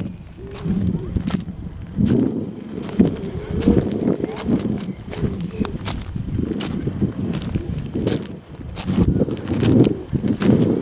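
Footsteps crunching on beach pebbles at a walking pace, each step a sharp crunch, with wind rumbling on the microphone.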